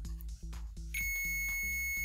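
Capacitor Wizard in-circuit ESR meter beeping: a steady high-pitched tone starts about a second in as its probes rest on the capacitor. The beep signals a low ESR reading, meaning the capacitor is good.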